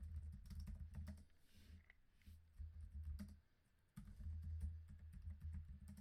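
Faint typing on a computer keyboard: a run of quick key clicks with a short pause just past halfway, as a terminal command is entered.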